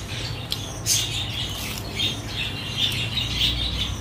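Close-up eating sounds: wet mouth clicks from chewing and fingers mixing rice with curry on a plate, a string of short clicks every half second or so over a low steady hum.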